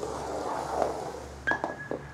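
Handling noise as a quadcopter frame is shifted on a wooden table: about a second of rubbing and shuffling, then a few light knocks about a second and a half in, with a short thin high tone.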